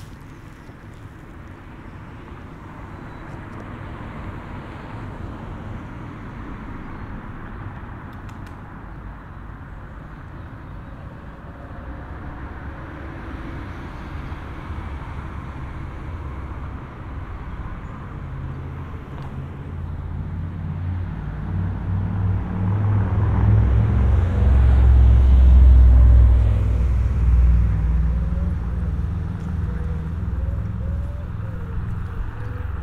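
A road vehicle approaching and passing close, its low engine hum and tyre noise growing steadily louder. It is loudest a few seconds before the end, then eases off a little.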